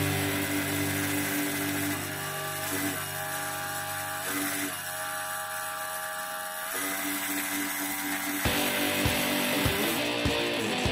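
Background rock music with a beat over the steady high-pitched whine of electric motors spinning fast on a test rig, the pitch dipping briefly a few times.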